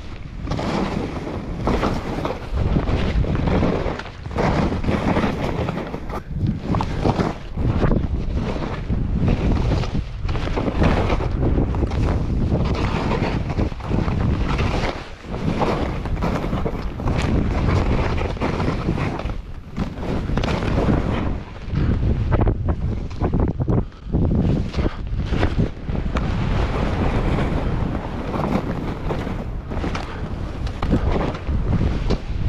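Wind rushing over the camera microphone while skis slide and turn through fresh powder snow, a loud continuous rush that dips briefly every few seconds.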